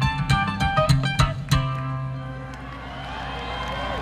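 Fast-picked bluegrass string-band music with plucked strings over a deep bass. It stops about one and a half seconds in on a final chord that rings on and fades.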